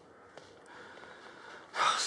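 A person's sharp intake of breath near the end of a quiet pause, short and breathy, drawn just before speaking.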